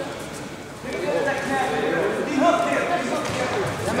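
Men's voices calling out during a grappling bout, starting about a second in; words shouted from the side of the mat.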